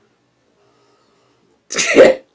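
Near silence, then near the end one short, loud burst of a person's voice.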